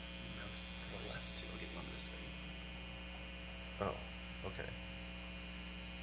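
Steady electrical mains hum in the sound system, with faint murmuring and a few small clicks, and a brief spoken "oh, okay" about four seconds in.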